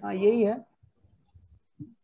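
A short spoken syllable, then a string of faint soft clicks with a slightly louder one near the end.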